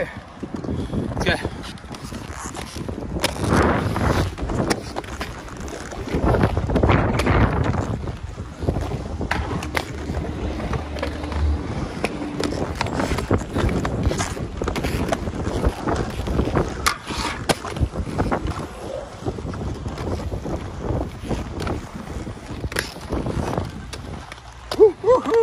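Inline skate wheels rolling and scraping over concrete ramps and ledges, with scattered sharp clacks of grinds and landings. Wind buffets the microphone throughout.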